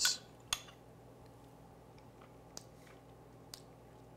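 Metal spoon clinking against a small glass while scooping out curds: two sharp clicks in the first half second, then a couple of faint ticks over quiet room tone.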